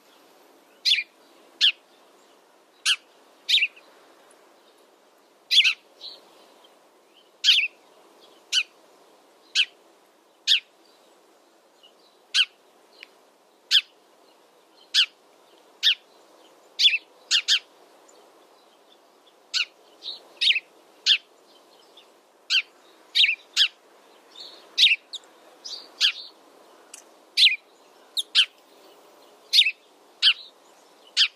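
House sparrow chirping: short, sharp single chirps about once a second, sometimes two in quick succession, over a faint steady background hiss.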